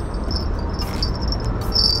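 Insects chirping in short, high-pitched trills that come and go, over a steady low rumble.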